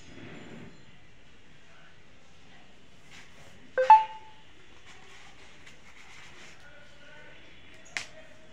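Quiet room background, broken about four seconds in by a sharp double click followed by a short ringing ping.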